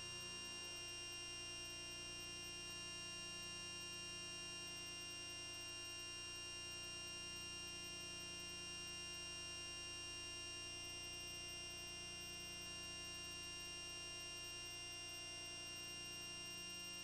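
Faint steady electronic hum with several constant high-pitched tones, the background noise of the recording chain, unchanging throughout; nothing else sounds.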